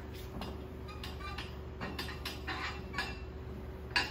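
Faint scattered ticks and clinks of metal as lifting straps are fitted around the handles of a loaded octagon deadlift bar, with a sharper knock near the end. A thin steady hum runs underneath.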